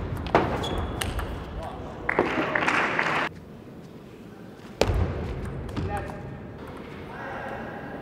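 Table tennis ball clicking sharply off rackets and table during rallies. About two seconds in, a loud burst of voices lasts around a second and cuts off abruptly; more clicks and quieter voices follow from about five seconds.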